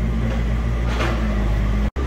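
A steady low machine hum. It cuts out abruptly just before the end.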